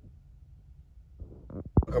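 Low, steady rumble of a car driving on the road, heard inside its cabin, followed by a few brief sharp sounds just before speech begins at the end.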